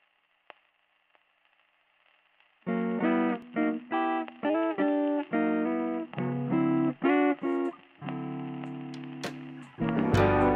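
Near silence with faint hiss, then about three seconds in a song's guitar intro starts: a run of plucked notes and chords, ending in a chord held and slowly fading near the end.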